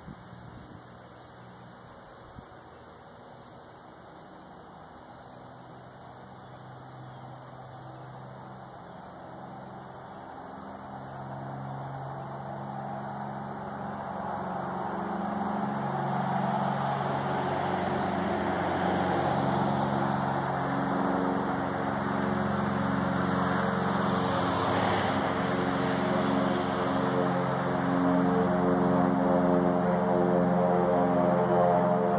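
Insects chirring steadily, while slow ambient music of long held chords fades in and grows louder through the second half until it drowns them out.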